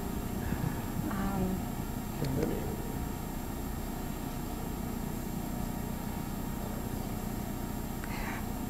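Steady low rumble and hiss of room tone in a talk hall, with a couple of faint, brief murmurs in the first two and a half seconds.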